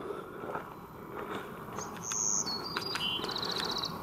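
A songbird singing from about halfway in: high whistled notes stepping down in pitch, then a fast trill. Faint outdoor background noise runs underneath.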